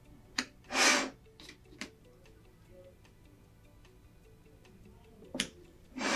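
Mount board being handled and repositioned on a mat cutter's bench: a sharp click, a brief sliding swish about a second in, a few light taps, and another sharp click near the end.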